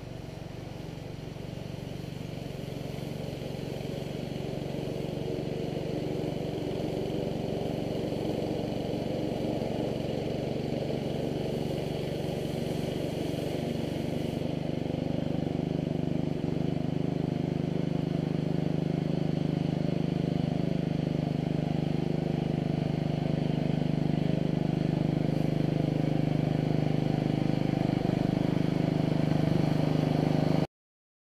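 A 48-inch Sweepster walk-behind power sweeper's 5.5 hp Honda single-cylinder engine running steadily, growing louder throughout as the machine moves closer.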